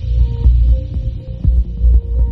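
Outro music dominated by a deep, pulsing bass.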